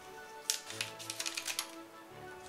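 Several light clicks and taps from a Lego minifigure blind bag and a pair of scissors being picked up and handled, over background music with steady held notes.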